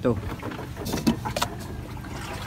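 A small plastic measuring cup being picked up and handled, with a few crinkly plastic clicks about a second in, over a steady low engine-like hum.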